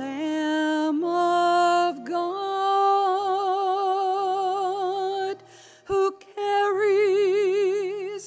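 Slow hymn: a single sung melody of long held notes with strong vibrato over low sustained accompaniment notes, with a brief pause and a click a little after halfway.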